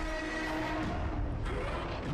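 Movie soundtrack of a giant-monster battle: a steady low rumble of sound effects and score, with faint held tones that fade out about three-quarters of the way through.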